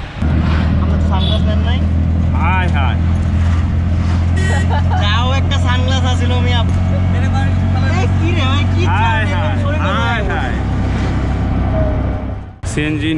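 Engine of a CNG auto-rickshaw running with a steady low hum, heard from inside the passenger cab. The hum eases a little about two seconds before the end.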